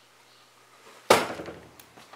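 A single sharp knock about a second in, dying away over about half a second.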